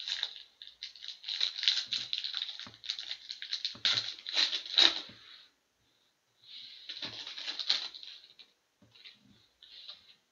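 Foil wrapper of a 2017-18 Synergy hockey card pack being torn open and crinkled by hand. A dense run of rustling lasts about five seconds, then a short pause, then about two more seconds of crinkling as the wrapper is pulled apart.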